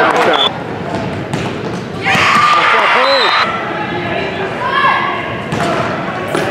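Indoor volleyball in a gym: players' and spectators' shouts echo through the hall, with thumps of the ball being hit and bouncing on the court. About half a second in, the level drops suddenly.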